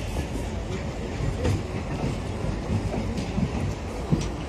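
Rajdhani Express coaches rolling away over the station tracks, a steady low rumble of wheels on rail.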